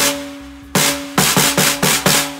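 Handmade one-of-a-kind Joe Partridge wooden snare drum with a dovetailed slatted shell, struck with a drumstick: a single hit, a second after a pause, then a quicker run of four strokes. Each hit rings on with a sustained tone, giving what is heard as a nice fat sound.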